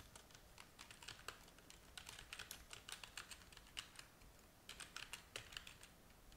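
Faint computer keyboard typing: quick, irregular keystrokes with a short pause a little past the middle.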